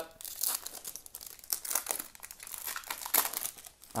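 Foil wrapper of a 2020 Topps Gallery baseball card pack crinkling in the hands as it is torn open, a run of irregular crackles.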